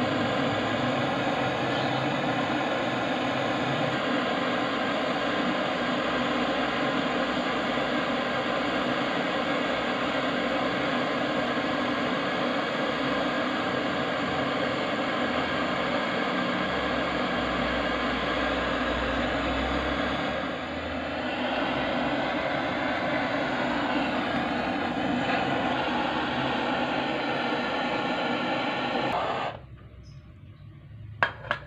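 Handheld butane flame-gun torch on a gas cartridge burning with a steady hiss while brazing a filter onto copper refrigeration pipe. The torch is shut off suddenly about a second before the end.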